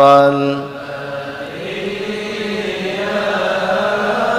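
A man chanting an Arabic shalawat verse into a microphone, unaccompanied. A long held note ends about half a second in, and quieter held singing follows.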